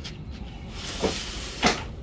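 Two short knocks about half a second apart, the second louder, as plastic egg crates are pushed and slid into place in a truck's cargo box.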